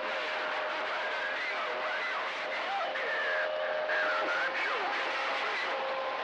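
CB radio receiving an open channel: steady static with faint, garbled distant voices and a few whistling heterodyne tones. The noise starts suddenly and cuts off just after the end.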